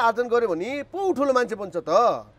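A man speaking into a close lapel microphone.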